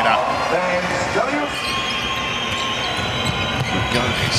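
Court sound of a basketball game: a ball bouncing and high sneaker squeaks over a steady arena crowd noise.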